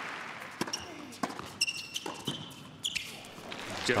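Tennis ball struck back and forth in a quick doubles exchange: a few sharp pops of racket on ball, roughly half a second apart. A high shoe squeak on the hard court falls in the middle.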